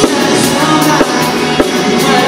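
Live pop-rock band playing loudly, with a drum kit's kick and snare hits, guitar and bass under a male lead singer's vocal.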